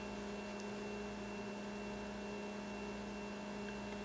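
Steady low electrical hum with a faint high whine above it: the recording's background room tone.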